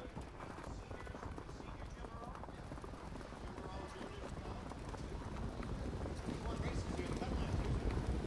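Hoofbeats of a field of harness-racing trotters pulling sulkies behind the mobile starting gate, growing gradually louder.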